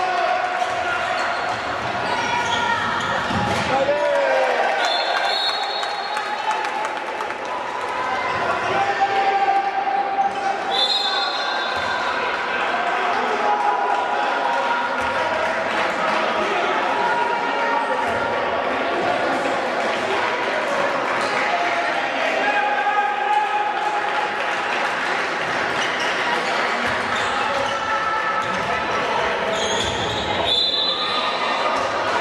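Indoor handball play: the ball bouncing on the court floor amid a steady hubbub of players' and spectators' voices, with two short high referee whistle blasts, about four and a half and eleven seconds in.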